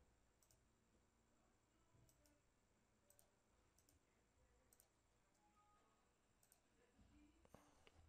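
Near silence with a few faint, scattered clicks from a computer keyboard and mouse as text is edited.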